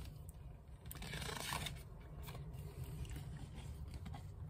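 A page of a paperback picture book being turned: a brief, faint papery rustle about a second in, followed by soft rubbing and a few small ticks as the page is settled.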